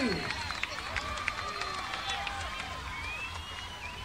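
Festival concert crowd between songs: scattered shouts, claps and a long whistle near the end over a general murmur, slowly dying down.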